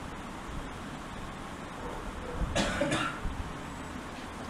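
A person's short cough, in two quick bursts about two and a half seconds in, over faint steady room hiss.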